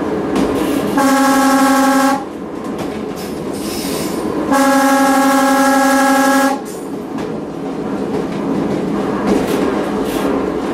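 Train horn sounded twice from the locomotive cab, a blast of about a second shortly after the start and a longer one of about two seconds midway, each a single steady note, as a warning for a road crossing ahead. Between and after them, the running noise of the train's wheels on the rails.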